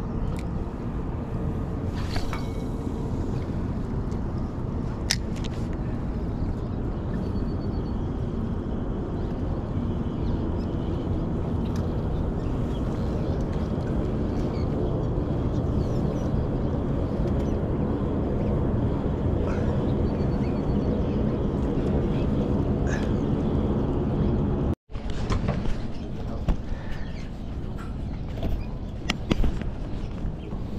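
Steady wind rumble on the microphone, with a few faint clicks. About 25 seconds in it cuts off abruptly and resumes with a run of short clicks and handling noise.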